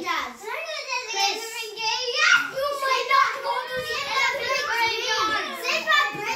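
Young children's high-pitched voices chattering and calling out as they play, with no clear words.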